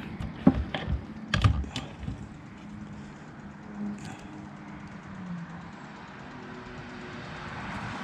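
A few light clicks and taps in the first two seconds as multimeter test probes are handled against a boat's bow navigation light fitting, then only a faint steady background.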